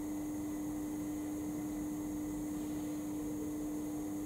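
A steady hum and hiss of room tone, with no other sound.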